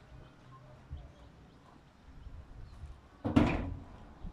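Knocking on a metal door: a faint knock about a second in, then a loud double knock near the end with a short ring.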